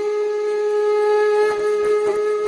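Title music: a flute holding one long, steady note.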